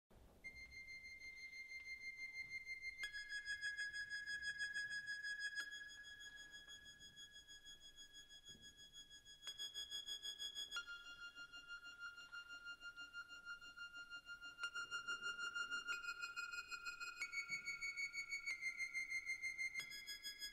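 Sparse electronic music: a single high, pure synthesizer tone held for a few seconds at a time. It steps to a new pitch every one to three seconds, and its loudness pulses in a fast flutter.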